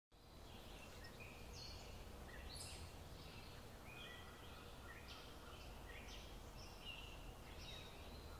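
Faint birdsong: short chirps from small birds a few times a second, over a low, steady background noise.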